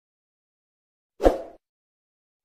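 Silence, then a single short thump about a second in that fades away within half a second, likely an added sound effect in the edit.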